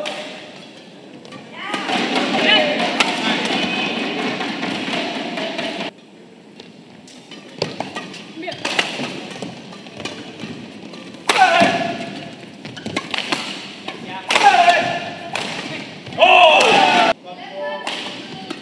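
Badminton rallies: rackets striking the shuttlecock in a series of sharp hits, broken by loud shouts between points. Noisy crowd sound fills the first few seconds.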